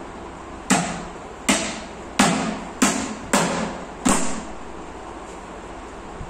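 Six sharp knocks on the laminated-board top panel of a flat-pack cabinet as it is struck down into place, coming at uneven intervals of well under a second, each ringing briefly.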